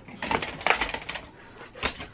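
Small hard objects clicking and clinking as they are handled and set down on a cluttered dresser top, with a few separate light clicks and the sharpest one near the end.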